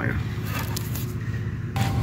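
Faint clicks and rustling from gloved hands handling the plastic wiring connector of an HVAC blend-door actuator, over a steady low hum.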